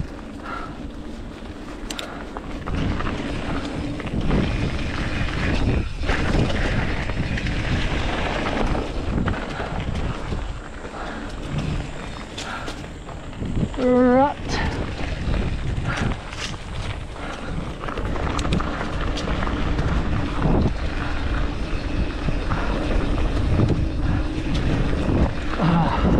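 Norco Sight A1 mountain bike running fast down a dirt trail: tyres rolling over loose dirt and gravel, with sharp knocks and rattles from the bike now and then and wind rushing over the camera microphone. The rider gives one short call about halfway through.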